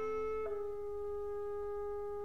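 Orchestral wind instruments holding a soft sustained chord; about half a second in the upper notes drop away, leaving a single steady held note.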